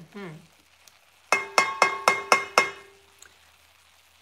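A wooden spatula tapped six times in quick succession, about four a second, against the rim of an enamelled cast-iron pot, each knock leaving a ringing note that fades out soon after the last tap.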